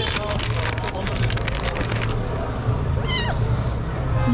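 A kitten meows once about three seconds in, a short wavering call falling in pitch, over a steady low hum. Before it, for the first two seconds, comes a run of quick crackling clicks.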